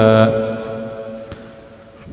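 A man's chanted Quranic recitation: the verse's last word, "ma'rufa", is held on one steady note and then fades away over about a second and a half.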